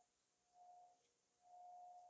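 Faint electronic beep: one steady pure tone, mid-pitched, coming and going in pulses of about half a second to a second.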